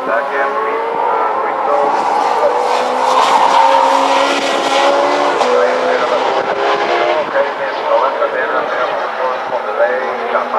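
Race car engine running on the circuit, heard from the grandstand as a steady, slowly rising note with a step in pitch about halfway through.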